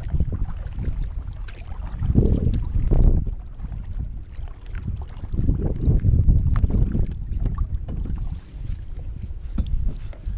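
Wind buffeting the microphone in gusts, strongest about two and six seconds in, over water sounds from a kayak being paddled, with small drips and clicks.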